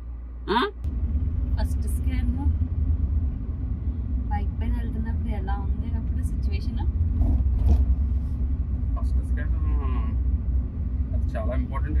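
Low, steady engine and road rumble inside a moving car's cabin, starting abruptly about a second in, with snatches of quiet talk over it.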